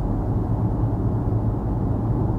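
Steady low drone of a vehicle driving at speed, heard from inside the cabin: engine hum with road and tyre noise.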